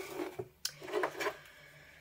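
Quiet handling noises as art materials are moved on a wooden work table: a single sharp click about half a second in, then faint rubbing and rustling that fade out.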